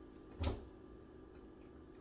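A quiet kitchen with one short, soft thump about half a second in.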